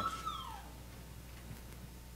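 A young child's brief high-pitched whine that slides down in pitch, over within the first half-second, followed by faint room tone.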